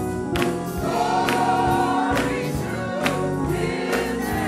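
Gospel choir singing with accompaniment, with hand claps on a sharp beat a little faster than once a second.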